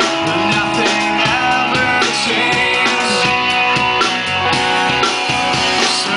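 A rock band playing live, with electric guitars, bass guitar and drum kit, and a male lead singer at the microphone.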